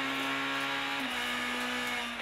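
Honda Civic Type-R R3 rally car's four-cylinder engine held at high revs, heard from inside the cabin as a steady high-pitched note that dips slightly about a second in.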